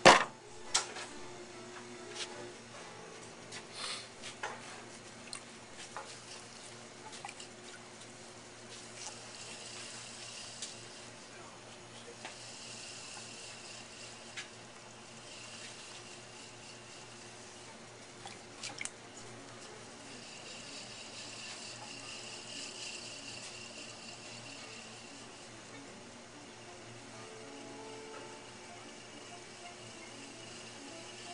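A ball of clay slapped down onto the wheel head once at the start, then a potter's electric wheel humming steadily while wet hands centre and open the spinning clay with a watery swishing that swells now and then.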